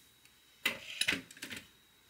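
A quick run of small, sharp clicks and clinks from hard objects being handled, lasting about a second and starting just over half a second in.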